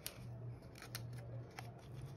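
Thin plastic card sleeve rustling faintly as a trading card is slid into it by hand, with a few small clicks.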